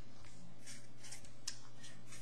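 Permanent marker drawing short strokes on paper, a few brief scratchy squeaks over a steady low hum.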